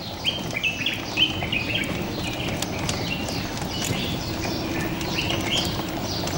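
Many small birds chirping at once in garden trees, short quick chirps overlapping throughout.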